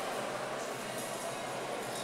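Steady, reverberant background din of a large sports hall, with no distinct event standing out.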